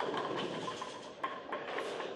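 Tenpin bowling ball smashing into the pins, the pins clattering and scattering into the pit, with a couple of late pins knocked down about a second in.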